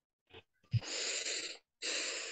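Two long breaths close to a microphone, each about a second, the first starting with a short pop.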